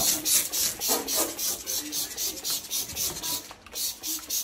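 Liquid cleaner squirted from a squeeze bottle onto a stainless steel sink in quick repeated spurts, about four or five a second, tailing off just before the end.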